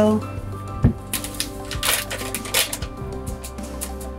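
Crinkling and rustling of a plastic packet of instant pistachio pudding mix as it is handled and poured into a bowl, in scattered short crackles with one sharp knock about a second in. Steady instrumental background music with a constant bass runs underneath.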